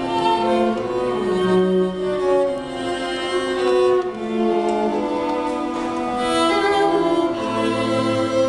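String quartet (two violins, viola and cello) playing a tango piece, with held, overlapping bowed notes and a moving cello line beneath.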